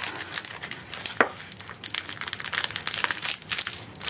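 Clear cellophane treat bag crinkling and crackling as it is gathered and handled while jute twine is tied around its neck. The sound is irregular, with one sharper crackle a little over a second in.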